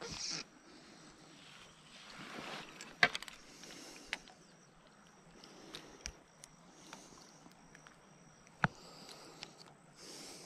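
Quiet handling noise as the fly and fly line are held and worked in the fingers: faint rustling and a few short sharp clicks, the loudest a quick cluster about three seconds in and a single click near the end.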